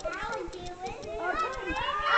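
Young children's voices chattering and calling out as they play in a foam pit.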